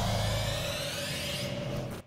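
Logo-intro sound effect: a noisy whoosh with a low hum underneath, slowly fading, then cut off abruptly at the end.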